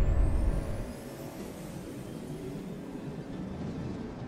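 Cinematic space sound design: a deep rumbling boom fades out within the first second, leaving a steady airy whooshing drone with a faint high whistle that slowly rises in pitch.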